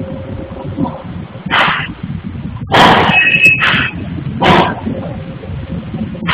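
A dog barking four times, the loudest barks near the middle, over a steady low rumble.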